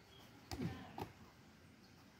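Two short, faint thuds about half a second apart: a football headed back and caught in the hands.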